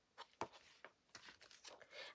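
Faint rustle and a few light clicks of a thin plastic stencil sheet being handled and slid into place.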